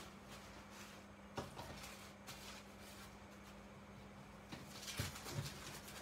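Faint handling of paper and craft materials on a desk: a few soft rustles and light taps over a low steady hum, with a couple of soft knocks near the end.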